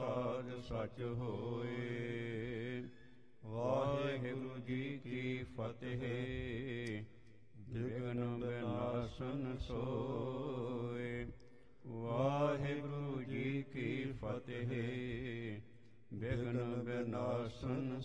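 A man's voice chanting Gurbani verses in long melodic phrases of about four seconds each, with short pauses for breath between them.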